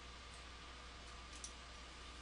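Near silence: steady hiss and low hum of an open microphone, with a couple of faint short clicks about a third of a second and a second and a half in.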